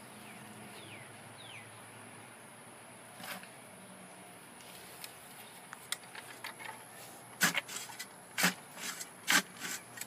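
Manual post hole digger working soil: a quiet stretch, then a run of about seven sharp crunching strikes close together in the last three seconds as the blades are driven into the dirt.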